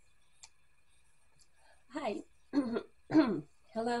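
A woman's voice: after about two seconds of near quiet, a run of short vocal sounds, then she begins speaking at the very end.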